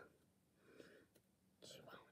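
Near silence, with faint whispering twice: a person's soft voice barely above room tone.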